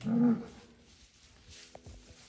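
A bull gives one short, loud bellow, under half a second long, right at the start.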